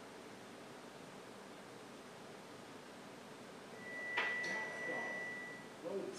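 Quiet room tone. About four seconds in, a click and a single steady high-pitched tone start together, and the tone holds for about two seconds.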